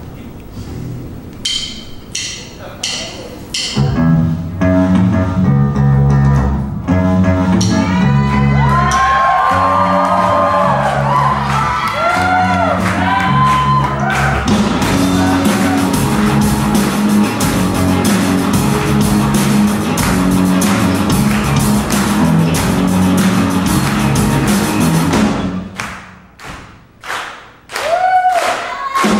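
Student rock band playing live through amplifiers: about five sharp stick clicks count in, then electric guitars, bass and drum kit come in loud together, with a voice over them. Near the end the band breaks into short hits with gaps between.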